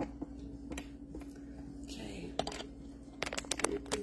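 Clicks and knocks of handling as a sheet pan and phone are carried, with a quick cluster of sharp clicks a little after three seconds in, over a steady low hum. A few faint words are murmured around two seconds in.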